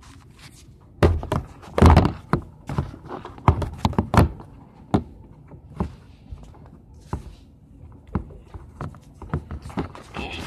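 Irregular handling knocks and thunks: the hand-held camera being moved about and bumped against a hard plastic Beyblade stadium. The loudest run of knocks comes about one to two seconds in, another about four seconds in, and scattered lighter taps follow.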